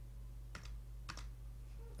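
A few faint computer keyboard keystrokes: one about half a second in and a quick pair just after a second in.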